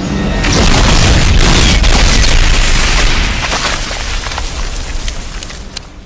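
Film sound effect of a large explosion: a deep boom that builds over the first second, then a rumble full of crackling debris that slowly dies away over the last few seconds.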